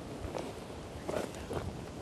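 Faint scattered knocks and rustles as a lidded fish-keeping bucket is opened and handled on the rocks, over a steady background hiss of sea and wind.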